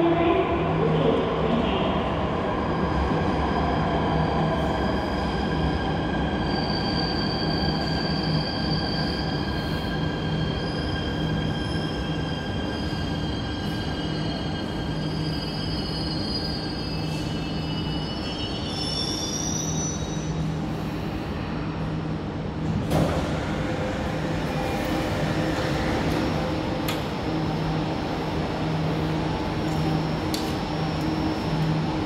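A Jakarta MRT metro train pulling into an underground station and braking to a stop, with several high squealing, whining tones that shift in pitch as it slows. About three-quarters of the way through there is a sudden burst of noise, over a steady low hum.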